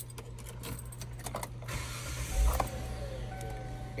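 Kia Sorento's engine started with the key: a short burst of cranking a little past halfway through as it catches, then running with a faint steady tone.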